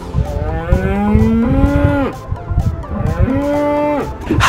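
Cow mooing twice: one long call rising slightly in pitch, then a shorter second moo near the end, over wind rumble on the microphone.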